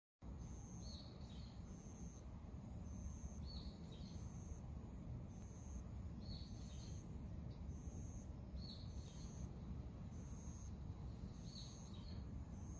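Birds calling in a garden. A short high note repeats about once a second, and a lower chirping call comes every two to three seconds, over a steady low outdoor rumble.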